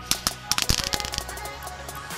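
Lesli Knallkraut, a small Category F1 ground firework, going off in a fast run of sharp crackles and small bangs that lasts about a second and then dies away. Electronic music plays underneath.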